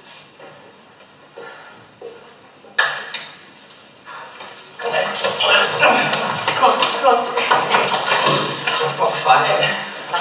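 A film soundtrack played back through classroom loudspeakers: a few sharp knocks, then from about five seconds in a loud, dense run of quick hits and clatter with voices.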